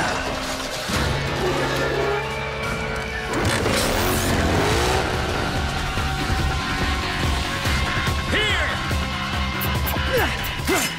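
Action-scene background music mixed with cartoon vehicle sound effects: a racing Mecha Beast's engine running at speed under the score.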